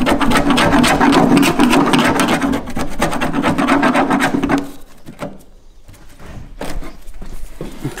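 Screwdriver scraping crumbly insulation off a car's sheet-metal wheel-well seam: a dense run of rapid, scratchy strokes for about four and a half seconds, then quieter, scattered scrapes.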